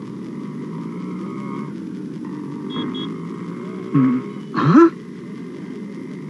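Bus-stop street ambience: a steady background murmur of a crowd and traffic, with two short high beeps about three seconds in and two brief vocal exclamations a little after four seconds.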